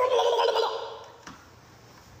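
A man's raspy, squawking vocal imitation of a parrot, lasting under a second, then quiet room tone.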